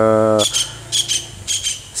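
Crickets chirping outdoors in about three short, pulsed, high-pitched bursts.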